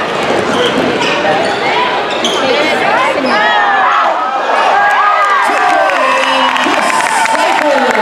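Basketball game sounds in a gymnasium: the ball dribbling and sneakers squeaking on the hardwood court, over steady crowd noise and voices echoing in the hall.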